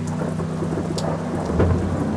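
Rain and thunder: a steady hiss of rain over a low, even hum, with a low rumble of thunder swelling about one and a half seconds in.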